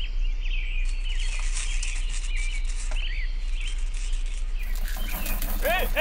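Small birds chirping repeatedly in the background over a steady low hum and hiss.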